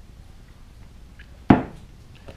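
A container set down with a single sharp knock about one and a half seconds in; otherwise only faint handling noise.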